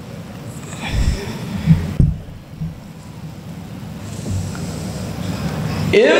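A pause in the recitation, heard through the microphone: a few low, muffled thumps about one and two seconds in and once more later, over faint hall noise.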